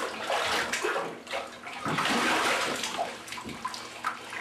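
Shower water spraying and splashing in a tiled shower stall, rising and falling unevenly.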